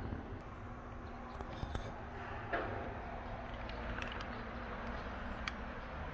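Steady low background rumble with a few light clicks and knocks, the loudest about two and a half seconds in.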